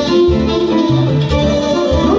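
Live Romanian folk band playing lively dance music for a hora, instrumental, with a steady pulsing bass beat.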